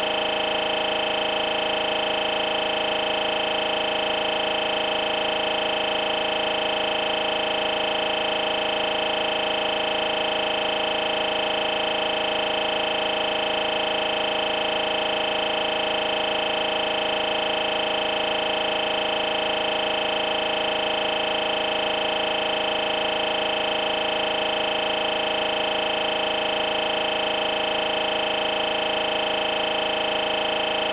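A steady, unchanging electronic buzz made of several held tones at once, with no break or change in pitch or loudness, typical of a recording fault while the picture is frozen.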